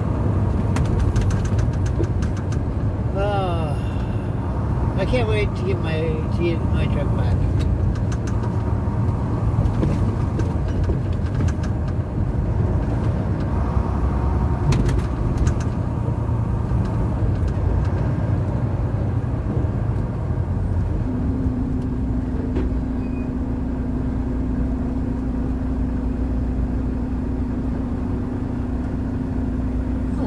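Semi-truck engine and road noise heard inside the cab while driving: a steady low drone. A steady, higher-pitched hum joins about two-thirds of the way through.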